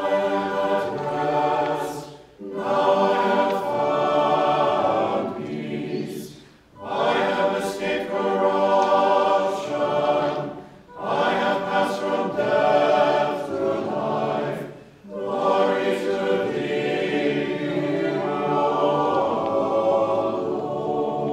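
Church choir singing Orthodox funeral chant a cappella, in five long phrases with brief breathing pauses between them.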